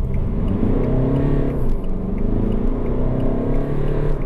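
Fiat Egea's 1.6 MultiJet four-cylinder turbodiesel accelerating at full throttle, heard from inside the cabin. The engine note climbs, drops as the dual-clutch automatic shifts up about two seconds in, then climbs again.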